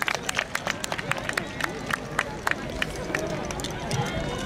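Scattered sharp claps that thin out toward the end, over the murmur of crowd voices.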